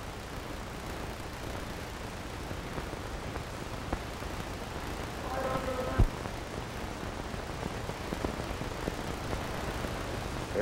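Steady hiss and low hum from a blank stretch of an old videotape transfer. About halfway through comes a brief faint pitched sound, ending in a sharp click.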